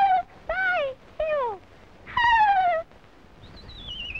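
Cartoon animal-voice cries: a string of short wailing yelps, each sliding down in pitch, about a second apart, in the manner of a little monkey whimpering. A faint high whistle glides down near the end.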